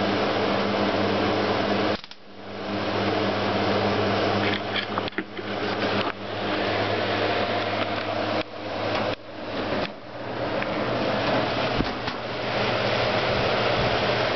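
Respiraide electronic air cleaner running steadily, its fan blowing with a mains hum from the high-voltage cell. Several sharp snaps break in as dust drawn into the collector cell, its pre-filter removed, makes it spark.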